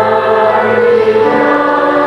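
A choir singing slow, sustained chords of sacred music, with the harmony shifting to new notes a little past halfway.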